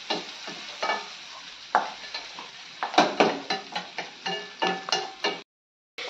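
A wooden spatula stirs and scrapes masala in a steel kadai while it fries in butter with a steady sizzle. The clicks and scrapes of the spatula against the pan come thicker after about three seconds, then the sound cuts off suddenly shortly before the end.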